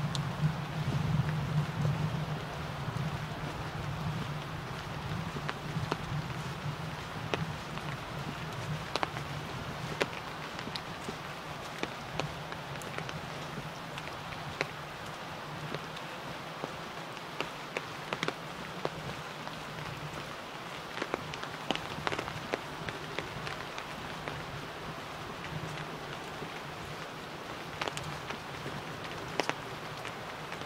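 Outdoor forest ambience recorded through a homemade binaural microphone while walking a leaf-strewn dirt trail: a steady rustling hiss with scattered sharp crackles of leaves and twigs underfoot. A steady low hum runs beneath, strongest in the first few seconds.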